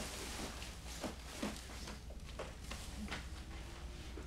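Faint rustling of clothing and a few light taps from hands patting a man down over his jacket, over a low steady room hum.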